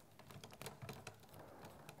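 Faint small clicks and scrapes of a screwdriver turning a brass terminal screw on an electrical outlet, tightening it down onto a copper hot wire.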